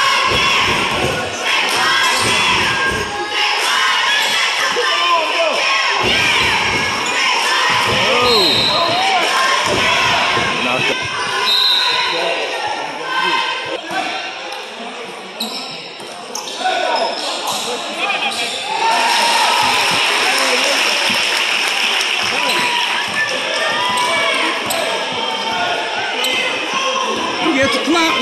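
A basketball bouncing and being dribbled on a gym's hard floor, the bounces echoing in the hall, amid spectators' voices and shouts.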